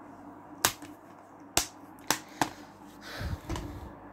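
Sharp plastic clicks from a Blu-ray case being handled and snapped shut, four in about two seconds, followed near the end by a brief low rustle of handling.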